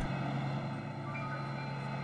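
Steady low hum of an idling vehicle engine.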